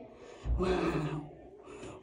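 A woman's single breathy, drawn-out 'wow', about half a second in.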